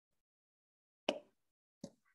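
Near silence broken by two brief sudden sounds, the first about a second in and the louder, the second near the end.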